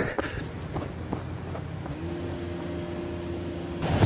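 Low steady engine rumble, with a steady hum joining about halfway through and stopping just before the end.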